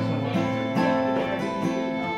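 An acoustic guitar strummed with two violins playing along in an instrumental passage, with held notes over repeated strums.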